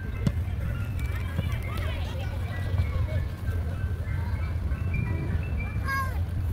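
An ice cream truck's jingle: a simple melody of short held notes stepping up and down, over a steady low rumble and distant voices.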